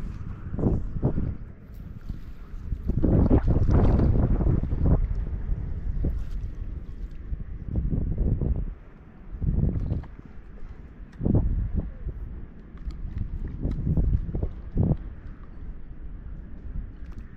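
Wind buffeting the microphone in gusts: a low rumble that swells and drops several times, loudest from about three to five seconds in.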